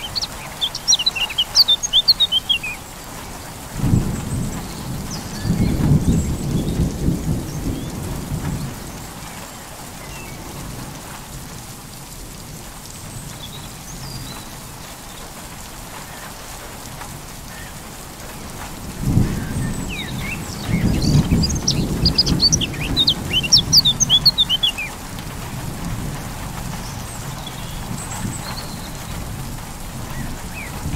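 Steady rain with two long rolls of thunder, the first starting about four seconds in and the second about nineteen seconds in. Birds chirp in quick runs at the start and again during the second roll.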